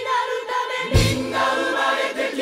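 Gospel-style choir singing over a keyboard and percussion backing track, with a deep low note landing about a second in.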